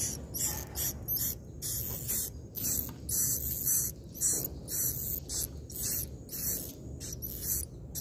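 Swiftlet calls in a swiftlet house: a rapid, irregular run of short, high, dry chirps, about two to three a second.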